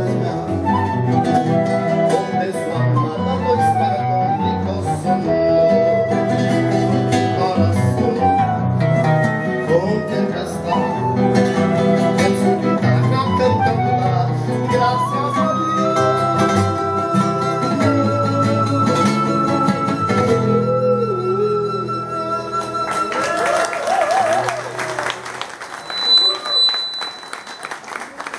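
A flute and two nylon-string acoustic guitars playing a tune together, with plucked guitar chords under the flute melody. From about halfway through, the flute holds one long high note for several seconds.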